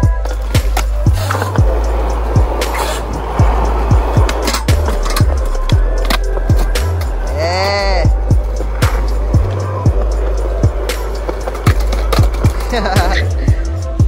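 A skateboard rolling and clacking, mixed under music with a deep, stepping bassline and a steady beat. A swooping sound comes about eight seconds in.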